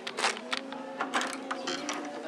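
A door's metal lever handle being worked and its latch clicking as the door is opened: several short sharp clacks and rattles, the loudest about a quarter of a second in.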